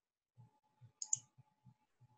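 Two quick computer mouse clicks about a second in, over faint soft low thumps and a faint steady hum.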